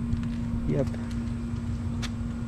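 A steady mechanical hum with a continuous low rumble beneath it, unchanging throughout.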